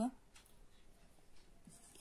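Faint scratching of a whiteboard marker's felt tip writing a digit on the board.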